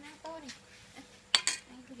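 Metal spoon clinking against a stainless-steel bowl: two sharp clinks in quick succession about a second and a half in.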